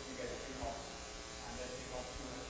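Faint, distant speech of someone talking away from the microphone, over a steady electrical buzz on the sound system.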